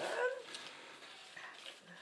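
A brief pitched human vocal sound at the very start, then a quiet small-room background.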